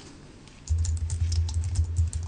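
Typing on a computer keyboard: a run of quick, irregular key clicks starting under a second in, over a low steady hum.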